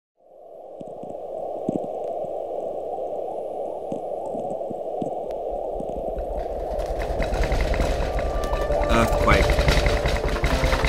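Static hiss with scattered crackles, like a detuned television or radio. About five seconds in a deep rumble joins and the noise swells, and tones begin to sound near the end.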